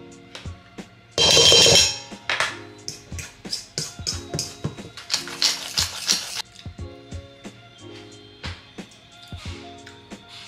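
Background music with a steady beat. A loud rasping burst comes about a second in, then a pepper grinder is twisted over a steel bowl, a run of rasping strokes lasting about three seconds.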